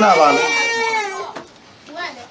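A young child's long, high-pitched drawn-out vocal sound, a little over a second, sagging in pitch at the end.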